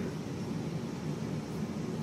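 Steady background hiss and low hum of room noise, with no distinct event.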